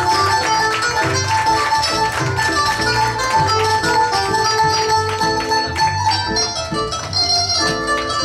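Live Arabic music: a qanun plucks a busy melody over a steady darbuka drum rhythm.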